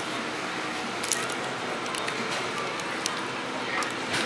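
Fast-food restaurant room noise: a steady hum with faint background voices and music, and a few short soft clicks.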